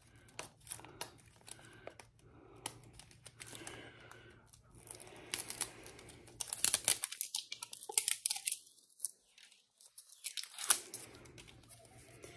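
Outer wrapping of a Little Tikes Minis surprise ball being torn and crinkled off in many short rips, busiest in the second half. The first layer is hard to open.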